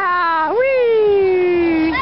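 A high-pitched voice calling in two long drawn-out notes, each rising quickly and then sliding slowly down in pitch.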